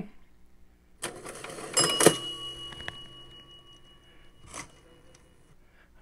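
Cash register bell: a brief mechanical rattle about a second in, then a single sharp ding that rings on and fades over a few seconds.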